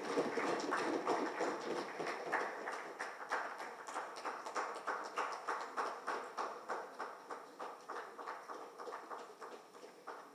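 An audience applauding, the clapping falling into a steady rhythm of about two to three claps a second and fading away toward the end.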